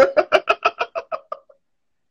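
A person's burst of cackling laughter, a quick run of 'ha-ha-ha' pulses about seven a second that fades out about a second and a half in.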